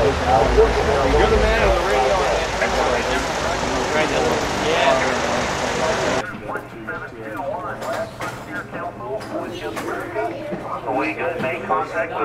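Indistinct voices of people talking, with wind rumbling on the microphone. About six seconds in the sound cuts abruptly to quieter, indistinct talk without the rumble.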